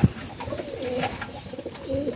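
Domestic pigeons cooing softly, low wavering coos, with a faint click about a second in.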